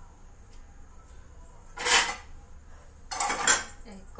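Metal kitchen vessels and utensils clattering on the stove counter: one loud clatter about two seconds in, then a longer run of clanks near the end.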